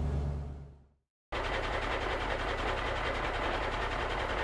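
A low steady truck engine hum fades out, and after a brief silence a diesel truck engine comes in with a fast, even rattle and runs steadily.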